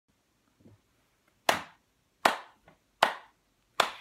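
Hand claps: four sharp claps in a steady beat, a little under a second apart.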